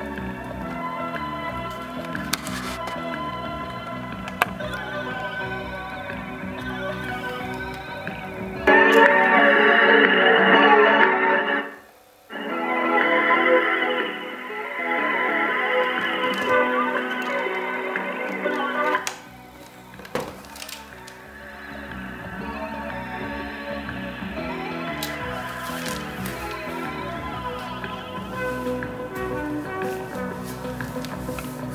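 Music played back from a cassette on a Sony TC-61 portable cassette recorder, with a thin, narrow sound. It gets louder about nine seconds in and cuts out abruptly around twelve seconds before resuming. It dips low again around twenty seconds, with a few light mechanical clicks from the machine's controls.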